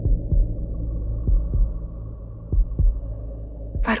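Heartbeat sound effect in a drama's background score: double low thumps, a beat and its echo about a quarter-second apart, repeating about every second and a quarter over a steady low drone.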